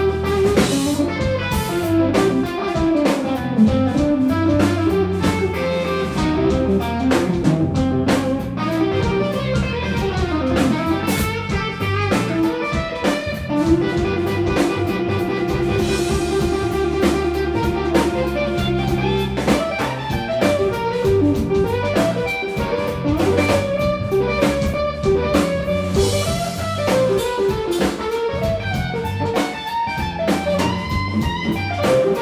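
Instrumental electric blues played live by a guitar, bass and drums trio: a Telecaster-style electric guitar takes a lead solo over bass guitar and drum kit. About halfway through, the guitar plays a run of rapidly repeated notes on one pitch.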